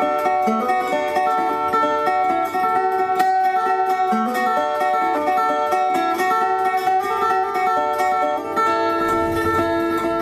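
Metal-bodied resonator guitar fingerpicked in a quick, steady run of short, bright notes. It is an instrumental passage with no singing.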